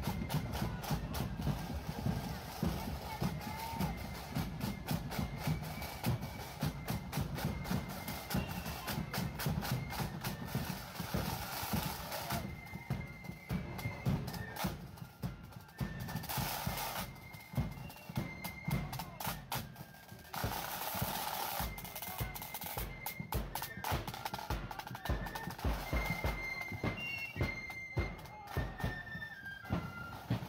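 Marching flute band playing: snare drums beat steadily and fast throughout, with flutes carrying the tune above them.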